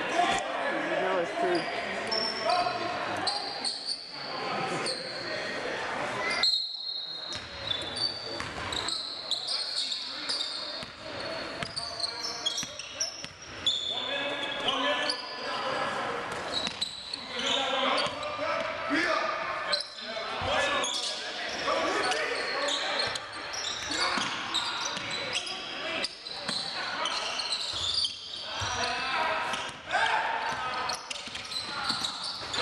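Basketball being dribbled on a hardwood court, with sneakers squeaking and players and spectators calling out indistinctly, echoing in a large gym.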